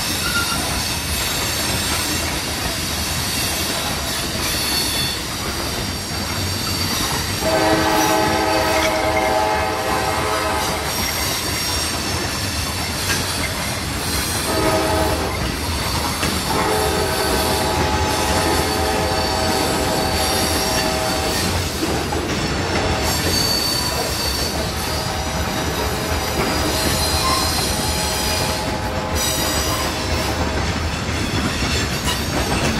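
Covered hopper cars of a CSX freight rolling past with steady wheel-and-rail noise and some high wheel squeal. The lead ES44AC locomotive's air horn sounds four blasts from the head of the train: a long one about seven seconds in, a short one about halfway, then two more long ones, the last running into the end.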